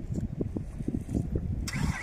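Wind buffeting a phone's microphone: an uneven, gusting low rumble, with a rise in hiss near the end.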